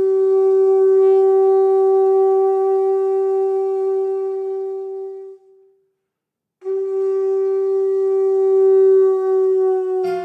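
Pū (conch shell trumpet) blown in two long single-pitched blasts, with a short break about five and a half seconds in; the second blast sags slightly in pitch as it ends.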